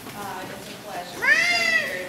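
A person's voice: brief speech, then one drawn-out high-pitched vocal sound that rises and falls in pitch for just over half a second in the second half.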